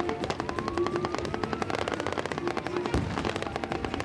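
Rapid automatic gunfire, shot after shot in quick succession, with one heavier blast just before three seconds in from a battlefield explosion charge set off to simulate an attack.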